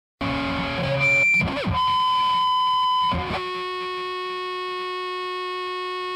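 Death metal intro on distorted electric guitar: a few notes, a quick swooping pitch glide about a second and a half in, then long, steady held notes ringing out.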